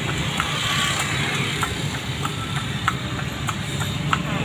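Horse-drawn cart on an asphalt street: the horse's hooves clop at a steady walking pace over a continuous rumble of motorcycle traffic and the cart's rolling.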